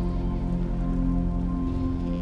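Calm ambient fantasy music of slow, held notes, with a soft rain-like patter underneath.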